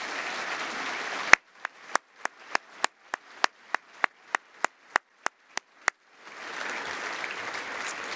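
Audience applause. About a second in it drops to single sharp claps, evenly spaced at about three a second, over near silence. Near the end the full applause returns.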